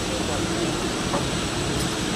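Steady low rumble of marine engines and machinery with wind noise on deck, unchanging throughout.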